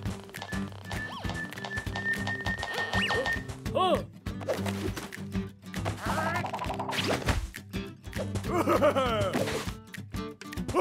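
Cartoon metal detector sound effect over background music: short high beeps that come faster and faster until they merge into one steady tone, which cuts off about three and a half seconds in. After that, a cartoon character's wordless vocal sounds come in short bursts.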